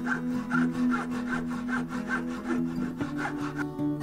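Japanese pull saw cutting a small block of wood by hand, in even rasping strokes about two to three a second that stop near the end. Background music plays underneath.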